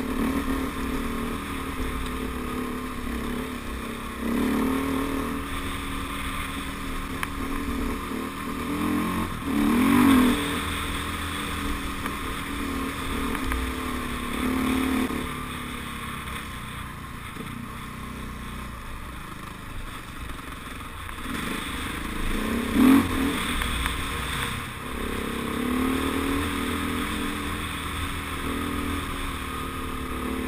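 Off-road motorcycle engine running under way, its pitch rising and falling as the throttle is opened and eased over a rough dirt track, with a steady rush of wind and chassis noise. Two sharp, loud spikes stand out, about a third of the way in and again about three-quarters through.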